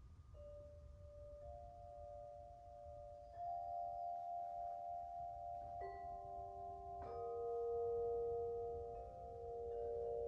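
Large metal tubular wind chimes set ringing by hand: about six single clear tones, each struck a second or two after the last and left to ring on, overlapping into a slow chord that grows louder toward the end.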